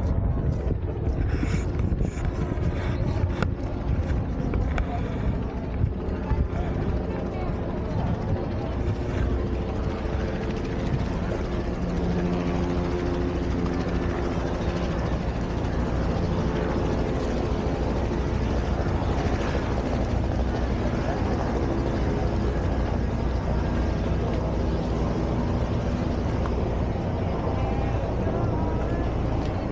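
Wind rumbling on the microphone, with people's voices and footsteps in the first seconds. Then a steady engine drone with several held tones comes in and fades again near the end.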